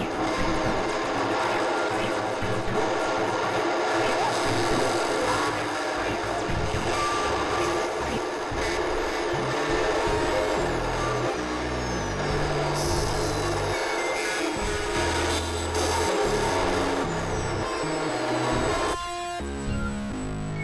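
Experimental electronic noise music: a dense, harsh synthesizer texture over blocky low bass tones that shift every fraction of a second, with thin falling glides up high. Near the end the texture thins out suddenly to a few steady stacked tones.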